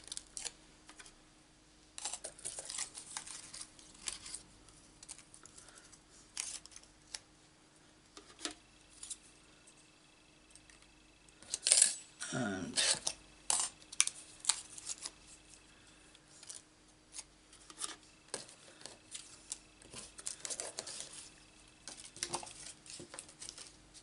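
Thin metal cutting dies and die-cut cardstock being handled on an acrylic cutting plate as the cut pieces are poked out with a pick: scattered light metallic clicks and clinks with paper rustling, busiest and loudest about halfway through.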